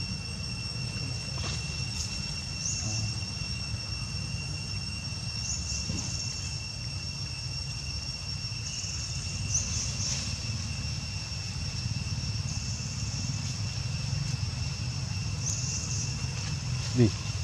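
Insects in woodland: a steady high-pitched whine with short buzzes every few seconds, over a steady low rumble.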